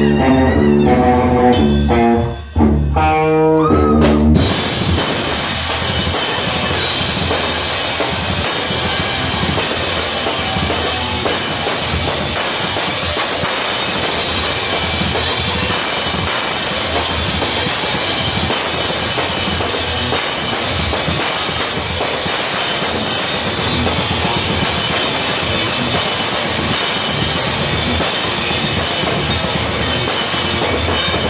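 Live band with drum kit playing loud. A few seconds of separate pitched notes with a short break about two seconds in, then from about four seconds in the drums, cymbals and band come in together as a dense, unbroken wall of sound.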